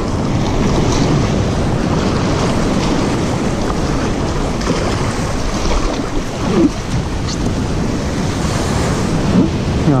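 Breaking surf and foamy white water washing around a kayak as it rides in to the beach, with heavy wind noise on the microphone.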